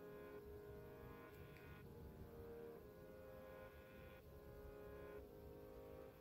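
Faint, soft background music: sustained chords that change about once a second.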